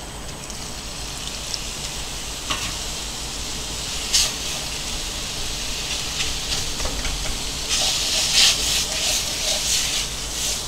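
Butter-and-flour roux sizzling in a non-stick pan while a wire whisk stirs it: a steady hiss with a few sharp clicks of the whisk against the pan. Near the end the whisk strokes turn quick and louder, scraping, as milk is worked in little by little for a white sauce.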